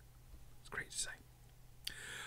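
A pause in a man's talk: a faint breathy vocal sound about a second in and a small mouth click near the end, over a low steady hum.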